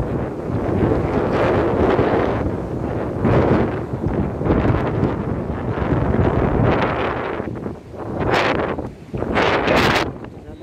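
Strong sea wind blowing on the phone microphone in gusts, rising and falling, with surf from breaking waves underneath.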